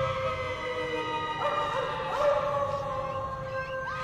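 Canine howling layered over eerie music: long howls drawn out and slowly falling in pitch, with short rising howls breaking in near the middle.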